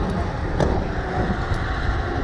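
Air rushing past the onboard camera's microphone as a Slingshot reverse-bungee ride capsule swings through the air: a steady low rumble of wind buffeting, with a faint click about halfway through.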